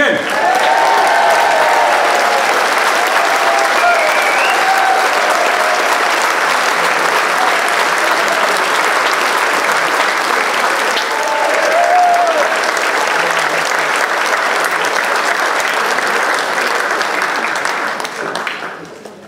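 Hall audience applauding steadily, with a few voices heard over the clapping.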